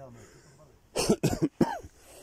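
A man coughs a few times, starting about a second in.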